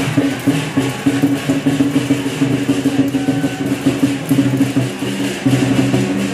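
Temple procession music: fast clacking percussion, several strokes a second, over a low note repeated in short bursts.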